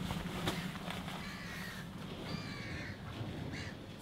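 A few faint bird calls, about a second and again about two seconds in, over a low steady hum.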